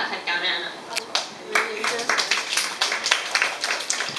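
Scattered hand clapping from a small audience, irregular and starting about a second in, with people talking over it.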